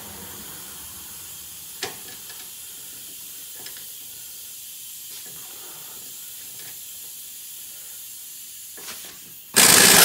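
Steady background hiss with a few light tool clicks, then near the end a short, loud burst from a power wrench driving the shallow-headed rear lateral-arm bolt, tightened a little at a time so the socket does not vibrate off.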